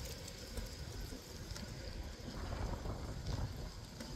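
Wind buffeting a phone microphone while riding a bicycle: a low, uneven rumble with road noise and a few faint clicks.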